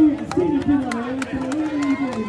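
A crowd of protesters shouting, several loud raised voices at close range, with scattered sharp clicks.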